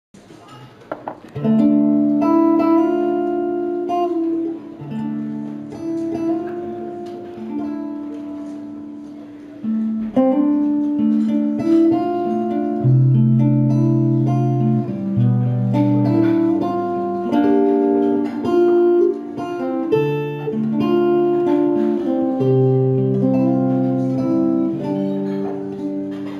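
Solo steel-string acoustic guitar playing a picked melody: single notes ringing over sustained bass notes, with a short break about ten seconds in.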